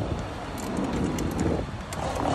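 Bicycle riding over pavement: a steady low rumble of wind on the microphone and rolling wheels, with a few small light clicks and rattles from the bike.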